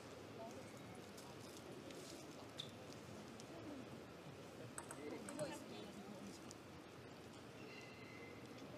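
Faint murmur of spectators' voices in a table tennis hall, with a few faint clicks around the middle.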